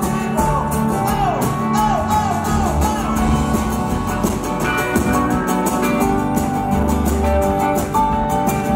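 Live pop-rock band playing: acoustic and electric guitars over drums and bass, with a run of short falling pitch slides in the first few seconds.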